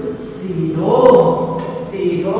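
A voice or voices on held, chant-like tones, sung rather than spoken.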